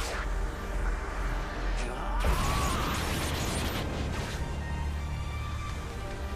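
Dramatic film score with steady sustained tones, cut by a sudden hit and a swooping sound effect about two seconds in.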